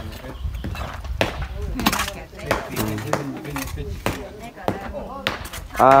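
Hand hoes and shovels chopping and scraping into packed earth: several sharp, irregularly spaced strikes over quiet voices.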